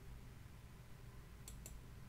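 Two quick computer mouse clicks about a second and a half in, a press and its release, over near-silent room tone.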